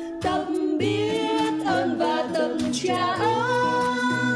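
A recorded song playing: a sung voice holding and gliding between notes over a repeating low bass line.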